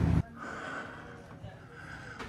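Quiet indoor room tone with a faint steady high hum, and faint breathing close to the microphone.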